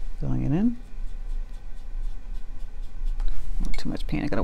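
Watercolour brush strokes scratching softly across textured watercolour paper as thin lines are painted, over a steady low electrical hum. A brief rising 'mm' is voiced just after the start.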